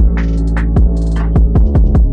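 Instrumental hip hop beat with no rapping: a deep, sustained bass under regular drum hits and hi-hat ticks.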